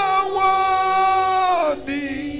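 A man's voice singing one long high note through a microphone, holding it steady, then gliding down and breaking off near the end, over steady held tones of background music.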